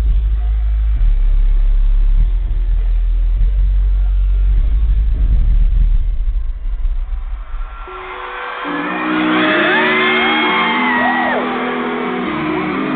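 Live pop concert through a loud PA: heavy bass for the first several seconds, a brief dip, then a new piece begins with steady held chords while the audience screams in high, swooping shrieks.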